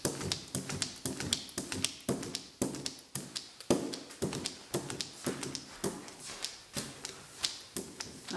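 A hand brayer rolled back and forth over tacky printing ink on a plastic inking plate, inking a dried plant: a quick, irregular run of sharp taps and clicks, several a second.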